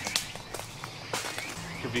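Footsteps on dry leaf litter and twigs on a woodland floor: a few separate, scattered steps.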